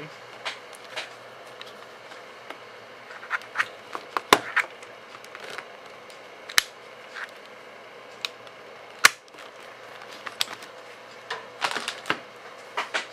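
Dell Latitude D430 laptop being handled as its battery is pulled: scattered sharp plastic clicks and knocks, the loudest at about four, six and a half and nine seconds, with a quick cluster near the end.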